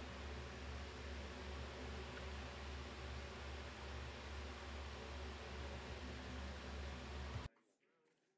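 Steady low electrical-type hum with an even hiss, unchanging, which cuts out abruptly about seven and a half seconds in.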